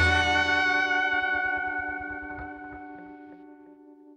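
The song's final chord ringing out on an effects-laden electric guitar after the band stops, fading steadily away over about four seconds.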